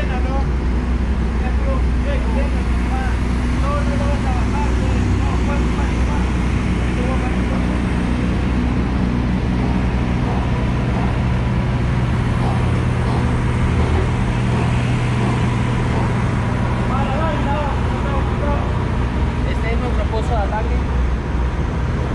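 A steady low engine drone, its pitch holding level and swelling somewhat in the middle, with faint voices of workers scattered through it.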